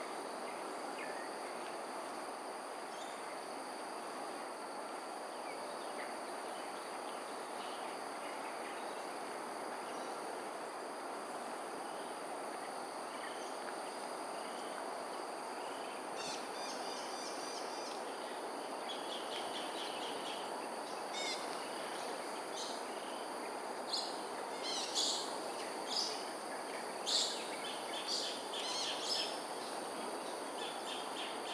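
Outdoor ambience of insects and birds: steady high-pitched insect buzzing over a constant low hiss. From about halfway through, short bird chirps come in repeated clusters, loudest and most frequent near the end.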